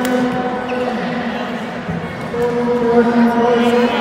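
A voice holding two long, steady drawn-out calls, the second louder, with a sharp racket hit on a shuttlecock at the start.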